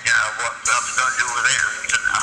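Recorded voice and music played back from a laptop over the room's speakers, like a radio segment. The sound grows fuller about two-thirds of a second in.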